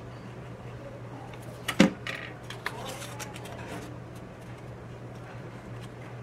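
Hands handling stiff folded paper pieces, with light rustles and small clicks, and one sharp knock a little under two seconds in. A steady low hum runs underneath.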